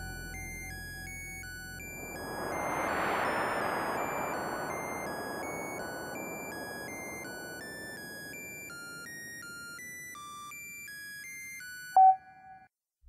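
Electronic sci-fi soundtrack: a stream of high, steady computer-like bleeps jumping from pitch to pitch, under a hissing swell that rises about two seconds in, peaks about a second later and slowly fades.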